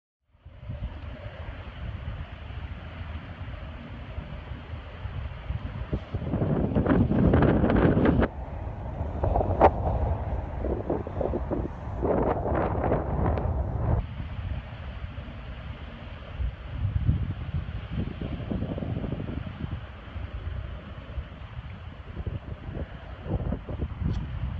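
Wind buffeting a phone microphone out on a kayak on choppy open water, a steady low rumble with water noise beneath, growing louder in two gusty stretches in the middle with a few brief knocks.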